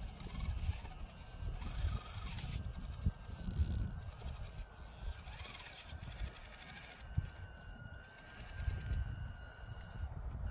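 Axial SCX24 micro crawler's small electric motor and gears whining faintly. The pitch rises and falls a few times with the throttle as the crawler picks its way onto a stump, over an uneven low rumble with a few light knocks.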